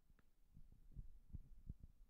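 Near silence with faint, irregular low bumps of a handheld microphone being handled.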